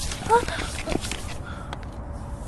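A person's short vocal sound, one brief rise and fall in pitch, amid a burst of hiss and several sharp clicks in the first second.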